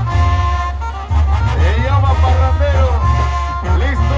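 Live Mexican banda brass band playing, a sousaphone carrying a pulsing bass line under sustained and sliding wind melody.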